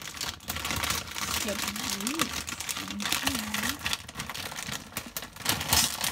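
Plastic snack bag crinkling and crackling as it is handled and pushed into another bag, with a few short hummed vocal sounds in the middle.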